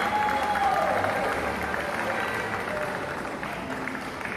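Audience applauding, with a long held cheer near the start and music underneath; the clapping is loudest early and eases off.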